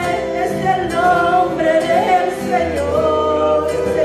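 A woman singing a Spanish worship chorus into a microphone over a small live band through a PA, her voice bending between held notes. A low bass note comes in about two and a half seconds in.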